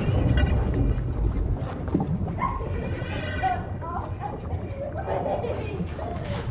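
Low, muffled underwater rumble, with a short, strained, muffled human cry rising in pitch about three seconds in.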